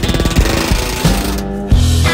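Pneumatic rivet gun hammering a rivet into the aluminium belly structure of a Cessna 140, a rapid burst that stops about a second and a half in, with a bucking bar held behind the rivet. Guitar music plays underneath.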